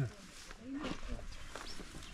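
Quiet, low murmured talk between people, only a few short soft words, with a brief high chirp a little after halfway.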